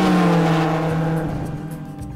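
Car engine sound in a logo transition sting: a steady engine note that drifts slowly down in pitch and fades away, over a rushing hiss.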